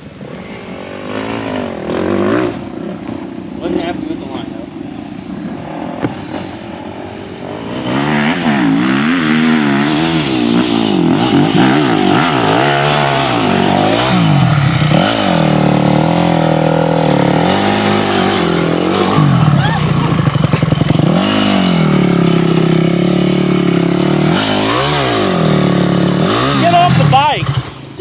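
Dirt bike engine heard close from on board, quieter for the first several seconds, then from about eight seconds in revved hard and let off again and again, its pitch rising and falling with the throttle as the bike works up a steep, rutted dirt trail.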